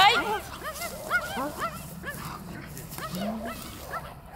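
German Shepherd giving rapid, short, high-pitched whining yelps, several a second, while gripping and tugging a bite sleeve during protection training. A loud burst comes at the very start.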